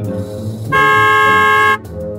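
A car horn honks once, a single steady blare about a second long that starts and stops abruptly, over soft background music.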